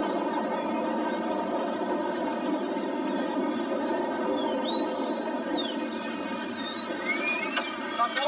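Steady heavy rain, a dense even hiss, with a few high gliding whistle-like tones in the second half.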